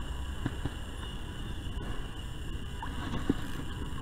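Low, steady rumble of wind on the microphone with faint water sounds around a kayak, and a few faint clicks.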